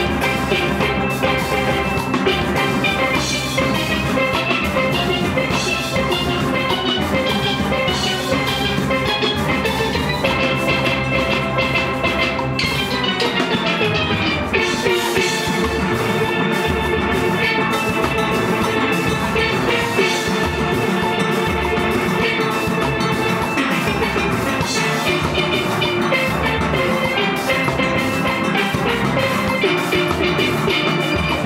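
Steel orchestra of steelpans playing a calypso arrangement at full volume, with the arrangement changing about fourteen seconds in.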